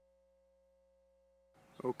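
Near silence with a faint, steady electrical tone, then a man's voice begins near the end.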